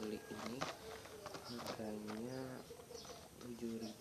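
A dove cooing: a few low coos, with a longer one in the middle that rises and falls. Light clicks and rustles of a cardboard snack box being handled.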